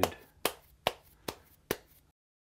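Hands slapping a lump of soft clay from palm to palm: five sharp, evenly spaced pats, a little over two a second.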